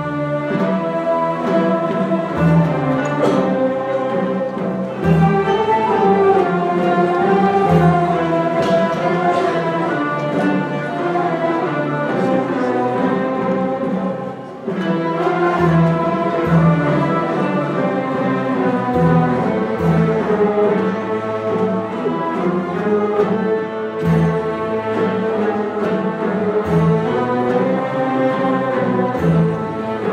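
Turkish classical instrumental ensemble playing a peşrev in makam Nihâvend, usul Devr-i Kebîr: bowed strings and plucked lutes in unison melody over a low, regular beat, with a brief break about halfway through.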